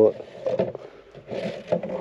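Black screw-top lid of a white plastic bucket being twisted open by hand, plastic scraping on plastic in a few short rasps.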